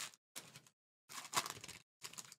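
Foil wrapper of a trading-card pack being torn open by hand: a few short crinkling rips, the longest and loudest a little over a second in.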